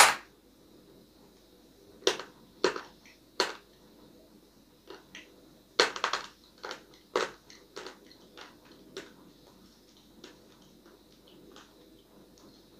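A piece of hard, dried edible clay snapping as it is bitten off, then crunching between the teeth as it is chewed, in separate sharp crunches that thin out and grow fainter over the following seconds.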